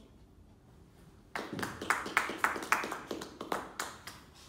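A small group of people clapping by hand, starting about a second and a half in and going on in a quick, uneven run of distinct claps.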